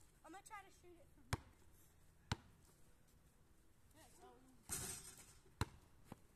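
A basketball bouncing on an asphalt driveway: two single bounces about a second apart, then another near the end. Faint distant voices and a brief rush of noise come just before the last bounce.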